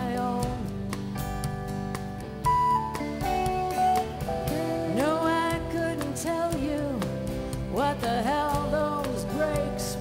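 Live band playing a country-rock song: a strummed acoustic guitar, electric bass and drums, with a woman singing the melody.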